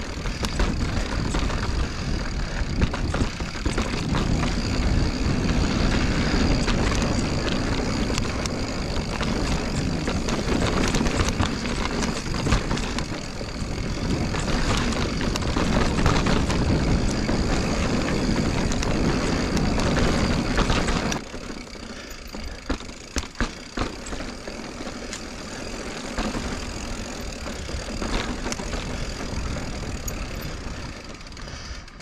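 Full-suspension mountain bike being ridden down a rocky trail: a steady rush of wind and tyre noise with constant rattling clicks and knocks from the bike. About two-thirds of the way through it drops noticeably quieter, with a few sharp knocks.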